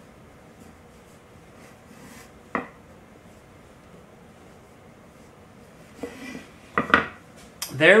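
Small knocks and clicks of work on a wooden countertop while gnocchi are shaped on a wooden gnocchi board, with a quiet background, one sharp click about two and a half seconds in and a few more knocks near the end.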